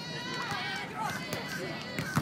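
Several people talking in the background, voices overlapping, over outdoor ambience.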